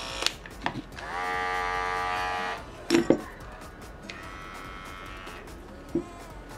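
Wahl electric dog-grooming clippers run in turn. After a switch click, a clipper motor hum rises in pitch as it spins up and runs steadily for about a second and a half, then stops with clicks. A few seconds in, a fainter, higher-pitched clipper hum runs for about a second.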